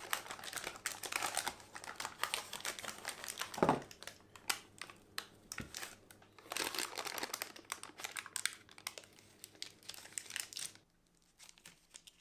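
Cooking-sheet paper and a cut-open paper milk carton crinkling and rustling as they are peeled away from a set cake, with one dull thump about four seconds in. The rustling stops suddenly near the end.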